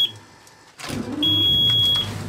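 Outboard motor being started with the helm ignition key: after a brief lull the starter cranks and the engine catches about a second in, then keeps running. A steady high electronic beep from the helm warning buzzer sounds over it for the second half.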